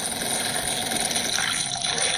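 A steady rushing noise, like running water, from the soundtrack of a stop-motion animation playing on a screen.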